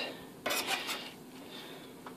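Metal serving spoon scraping and clinking against a metal pot while scooping cooked rice, a short burst of strokes about half a second in.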